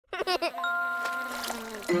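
Studio logo sting: a short cartoon giggle, then a bright chime chord that rings steadily for over a second, with a new note coming in near the end.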